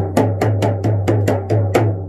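16-inch Remo Buffalo frame drum with a synthetic head, beaten steadily with a stick at about three to four strokes a second, each stroke over a deep ringing hum. The beating stops near the end.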